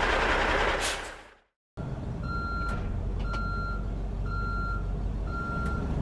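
A heavy truck's engine and road noise fading out over the first second and a half, cut off briefly. Then a truck's engine rumbling low and steady while its reversing alarm beeps about once a second.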